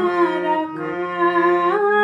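Harmonium playing the song's melody in held reed notes, with a woman's voice humming the tune along with it, sliding between pitches.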